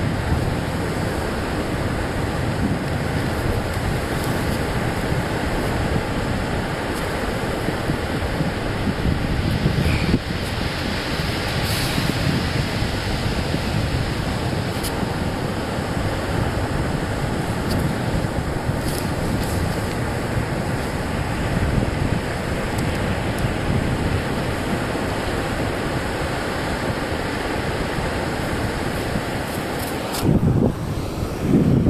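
Steady wind noise on the microphone mixed with surf breaking on the beach, with a few faint brief clicks around the middle.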